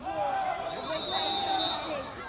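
Distant voices of players and spectators calling out, some of them high-pitched. A thin, high, steady tone runs under them for about a second in the middle.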